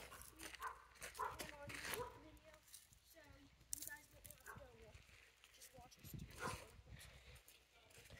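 Very quiet: faint voices in the distance, broken by pauses, with a few soft clicks.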